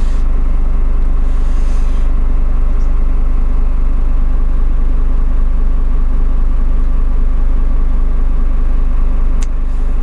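Diesel engine of a Hino truck idling, heard inside the cab: a steady low drone that holds constant without any change in speed.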